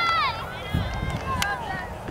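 High-pitched cheering shouts after a goal. One long, held shout drops in pitch and fades about a third of a second in, followed by shorter, fainter calls and a sharp click, over low wind-like rumble.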